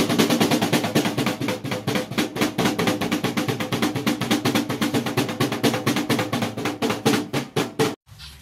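A white duck's webbed feet stamping fast on a snare drum, a rapid run of snare hits at about eight a second that spaces out a little near the end, like a drum roll.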